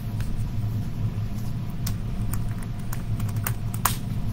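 A steady low hum with a few light clicks and taps scattered through it. The sharpest click comes near the end.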